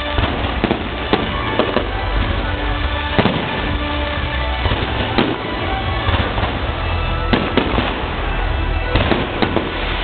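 Aerial fireworks bursting overhead: an irregular run of sharp bangs and crackles, several close together at times, over a continuous rumble, with music playing underneath.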